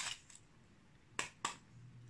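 Two sharp metallic clicks about a quarter of a second apart, from a small tin's lid being worked open.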